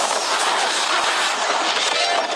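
Loud, steady rush of crackling noise from a film sound effect: the lightning blast that Zeus uses to strip off Thor's clothes.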